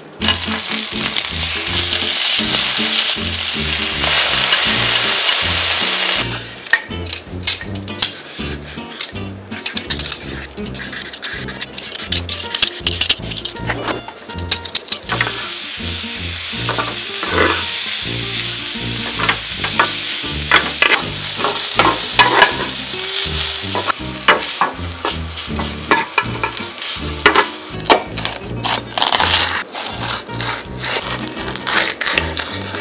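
Food sizzling in hot oil in a square nonstick frying pan as julienned carrots are stir-fried. The sizzle is loud and steady at first, with frequent taps and scrapes of a wooden spatula against the pan.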